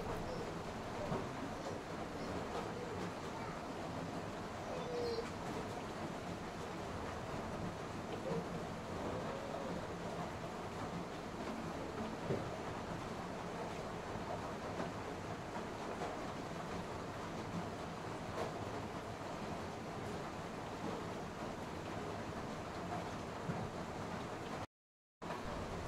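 Spiced onion-tomato masala sizzling steadily as it fries in an aluminium kadai, with a few scrapes and knocks of a spatula against the pan.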